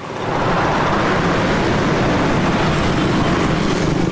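Road traffic driving past close by: a steady noise of engines and tyres that comes up sharply at the start and holds level.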